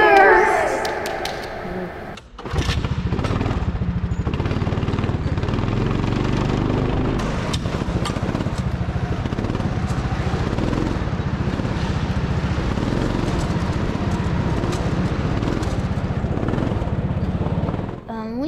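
Go-kart engine running steadily as the kart is driven, heard close up from on board the kart. It starts about two seconds in, after a short stretch of voice or music.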